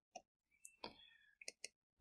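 Near silence with a handful of faint, short clicks scattered through it.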